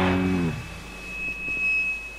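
The final chord of a punk rock song rings and fades out within the first half second. Then comes a quiet gap between tracks, with only a thin, high, steady tone that swells slightly and cuts off at the end.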